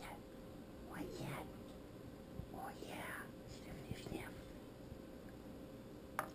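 A person whispering softly, in a few short, faint phrases.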